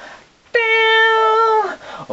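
A long high sung note starting about half a second in, held steady for about a second and sliding down in pitch as it trails off.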